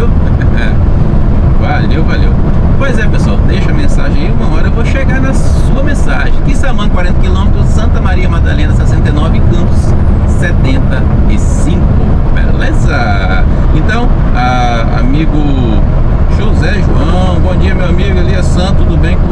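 Mercedes-Benz Atego 3030 truck's six-cylinder diesel engine and tyres droning steadily at highway cruising speed, with indistinct voices heard over it.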